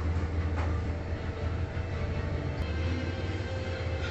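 A steady low rumble, like a motor running, with little change in level.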